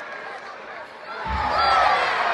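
Arena crowd noise from the spectators at a live wrestling match. A little over a second in, a low thud sounds and the crowd swells into loud shouting and cheering.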